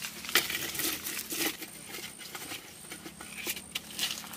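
Leafy twigs rustling and crackling as they are picked and stuffed into a clay pot. The sound comes in irregular bursts, loudest in the first second and a half.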